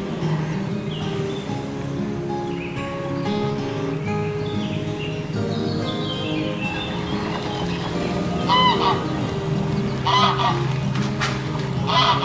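Background music plays throughout, and about two-thirds of the way through, three loud calls from water birds at the lake ring out over it, each a short harsh call a second or so apart.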